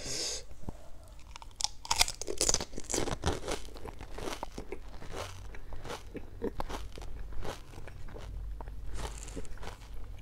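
Close-miked crunching and chewing of a whole pani puri (golgappa): the crisp fried shell, filled with spiced green water, cracking in the mouth. The crunching is loudest about two to three seconds in, then goes on as a run of smaller crackles while it is chewed.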